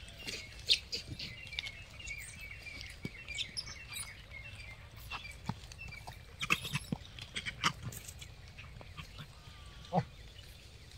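Many short, high chirping calls and squeaks over a faint outdoor background, with scattered sharp clicks and a few louder brief calls.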